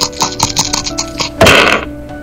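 Dice rattling and clicking in a shaker cup, a quick run of sharp clicks, followed about one and a half seconds in by a loud, brief rushing burst, over a faint steady tone.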